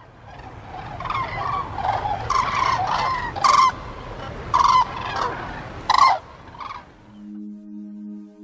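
A flock of waterbirds calling, with a string of loud short calls standing out over a low rumble. About seven seconds in the calls stop and soft ambient music with steady held tones comes in.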